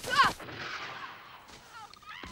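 A woman's cry with a heavy thud as she tumbles down a brushy slope, followed by a rustling slide through grass and brush that fades out.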